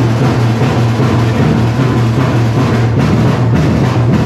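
Brass band playing, with the drums loudest.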